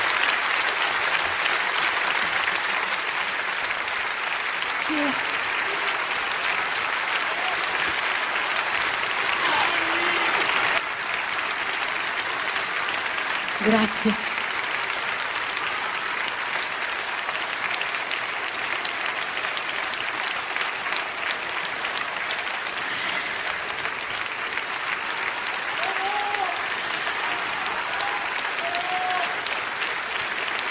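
Theatre audience applauding steadily, with a few voices calling out over the clapping, the loudest call about fourteen seconds in. The applause eases slightly about eleven seconds in.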